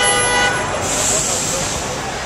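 A vehicle horn honks once, a short steady tone of about half a second, over busy street and crowd noise. A brief high hiss follows about a second in.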